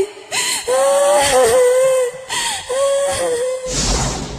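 A high voice held in two long, drawn-out notes with slight wavering in pitch. A rushing noise with a low rumble comes in near the end.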